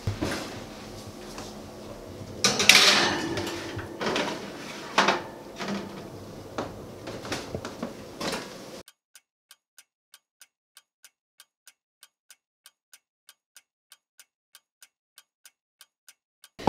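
A metal baking sheet is handled at an oven, going in with clattering and knocks, and the oven door is closed. Then the sound cuts to silence and a clock ticks steadily, about three ticks a second.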